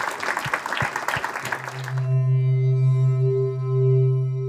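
Audience applauding for about two seconds, then cut off abruptly by outro music: a steady, held synthesized chord that rings on.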